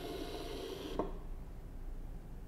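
Ozobot Evo robot's small built-in speaker playing a short electronic sound effect, which cuts off with a click about a second in.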